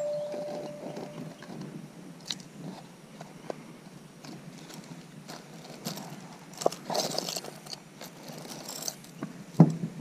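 Gloved hands rummaging through costume jewelry in a plastic jewelry box: chains and beads clinking and rattling in scattered small clicks, with a louder knock near the end. A short steady tone sounds at the very start.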